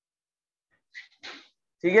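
A man's voice saying 'theek hai' near the end. Before it there is about a second of silence and a short breathy noise.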